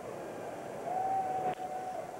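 A wooden baseball bat cracks against the ball about one and a half seconds in, with a single sharp hit: a ground ball off the bat. Under it runs a steady stadium crowd murmur, and a single steady high tone is held through the second half.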